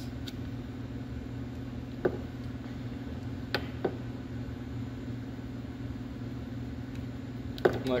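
Hand wire strippers clicking a few times while stripping insulation off thin LED bulb leads, over a steady low hum.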